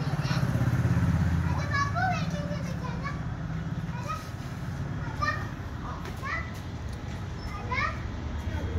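Children playing in the open, with short high calls and chirps of child voice scattered throughout. Under them runs a low engine hum from a motor vehicle, strongest in the first few seconds and fading after that.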